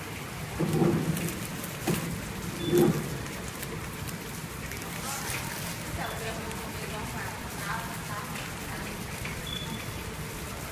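Flow wrap packing machine running with a steady noisy hiss as it wraps vegetable bundles in plastic film.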